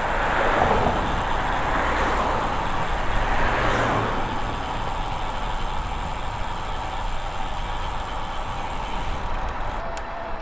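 Wind rushing over the camera microphone, with road noise from a bicycle coasting downhill. It is a steady rush, louder in the first few seconds.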